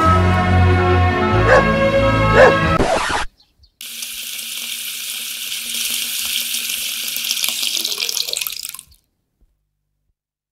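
Music swells and breaks off about three seconds in. After a short gap, a steady hissing, splashing stream of liquid follows for about five seconds and stops abruptly: a yellow Labrador urinating against the base of a lamppost.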